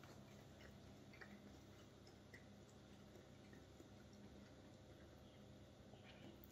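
Near silence: a faint steady low room hum with a few faint soft clicks and mouth sounds of quiet chewing on raw steak.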